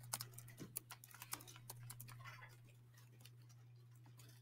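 Faint keystrokes on a laptop keyboard, a quick run of clicks in the first second and a half and a few more after, over a steady low electrical hum.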